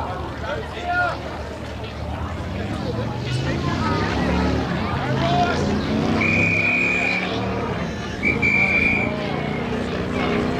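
Spectators shouting during play, with two long, steady blasts of an umpire's whistle, the first about six seconds in and a shorter one about eight seconds in.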